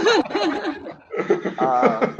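People laughing and chuckling in short repeated pulses, with a brief lull about halfway through.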